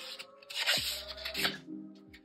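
Background music with held notes, under the rustle of paper and plastic packaging being handled, loudest from about half a second to a second in.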